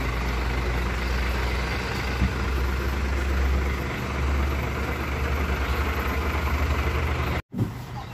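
Large diesel box truck's engine idling steadily, a deep even rumble with a slight pulse. It cuts out abruptly near the end.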